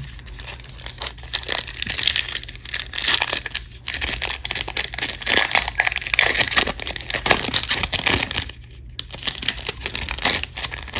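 Foil wrapper of a trading-card pack crinkling and tearing as it is ripped open and peeled off the cards: a dense run of crackles, with a brief lull near the end.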